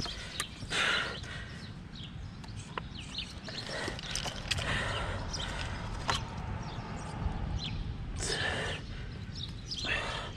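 Water splashing in short bursts, about a second in, around four to five seconds and again near the end, as a netted muskie is handled and unhooked in shallow water, with scattered clicks and knocks from the net and lure.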